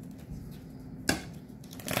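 Deck of tarot cards being handled and shuffled, with one sharp click about a second in and a brief clatter of cards near the end.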